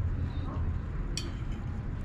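Steady low background rumble with a single sharp click about a second in, a metal fork against the plate.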